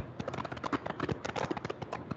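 Rapid, irregular tapping, several sharp clicks a second: calculator keys being pressed while working out a numerical answer.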